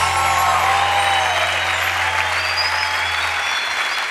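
Audience applauding at the close of a live song, while a low bass note from the band is held and fades away near the end.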